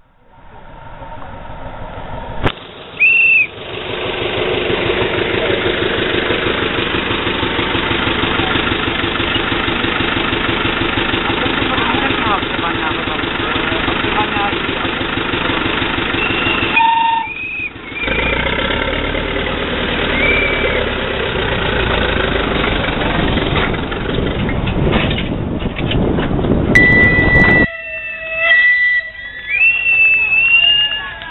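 A 600 mm narrow-gauge diesel locomotive running steadily as it hauls carriages, with a few short, high wheel squeals. Near the end a locomotive whistle sounds and people's voices are heard.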